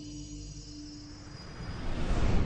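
Logo-intro sound design: sustained synth tones fade out while a rising, jet-like whoosh swells louder in the last half second, building toward a heavy hit.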